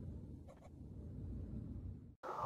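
Faint low rumble of a title-card sound effect dying away, with two faint clicks about half a second in.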